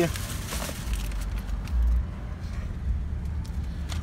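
Thin plastic shopping bag rustling and crinkling as a packaged item is pulled out of it, over a steady low rumble that swells briefly near the middle.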